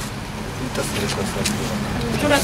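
Low, steady rumble of road traffic, like a car going by.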